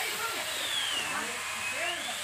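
Chainsaw running steadily with a hissing whine whose pitch wavers slowly up and down as it cuts into the coconut palm's trunk, with men's voices calling underneath.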